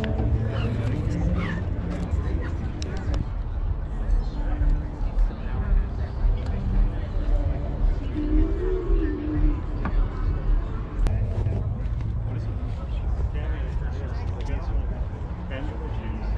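Indistinct talking and chatter of people close by, over a steady low rumble.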